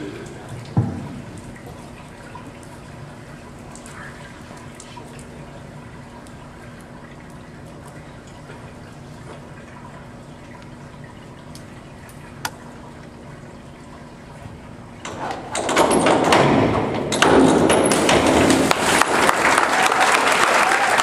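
A single thump just under a second in, then the quiet, steady background of an indoor pool hall. About 15 seconds in, a crowd breaks into loud applause and cheering that runs on to the end.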